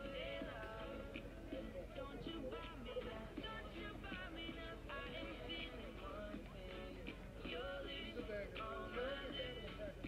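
Background music playing at a low level, a continuous melody with no talking over it.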